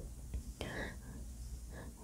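Quiet room with a faint, breathy mouth sound, like a soft whisper or breath, about half a second in, and another small one just before speech resumes.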